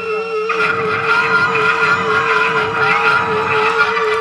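Live rock band holding out a sustained passage: electric guitars slide and bend notes over a steady, wavering held note. About half a second in, the upper notes swell in more fully.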